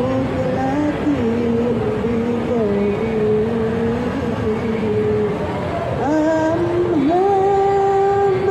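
A woman's voice chanting dzikir in long, drawn-out notes through a microphone and loudspeaker, the pitch sliding between held tones and stepping up to a higher held note about six seconds in.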